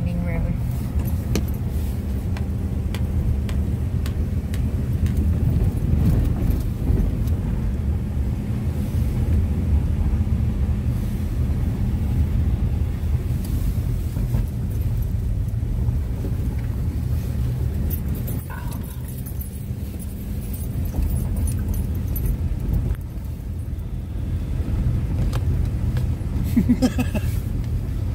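Steady rumble of a Honda CR-V driving along a rough gravel road, heard from inside the cabin. Tyre and road noise mix with the engine's low drone.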